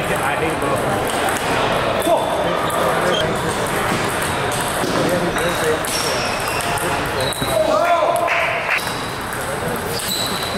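Table tennis ball clicking back and forth off paddles and table in a rally, over the steady chatter of voices and other tables' play in a large hall.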